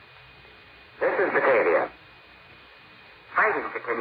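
A man's voice over a shortwave radio link: a short phrase about a second in, then speech resuming near the end. Under it runs a steady hiss with a faint, steady high whistle.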